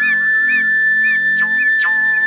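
Background film music: a high whistle-like lead holds one long note over a low, evenly pulsing accompaniment.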